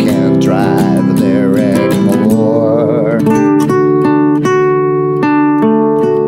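Yamaha nylon-string guitar strummed, with a man's voice singing a held, wavering line over it for about the first three seconds. After that the guitar plays alone, chords struck in a steady rhythm.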